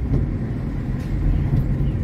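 Steady low rumble of a car's engine and tyre road noise heard from inside the cabin while driving along.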